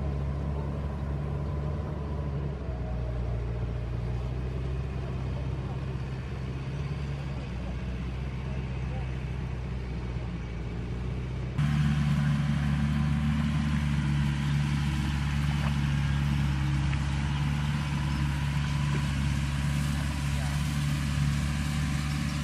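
Tractor engine running steadily while it tills a wet field: a continuous low drone that gets louder about halfway through.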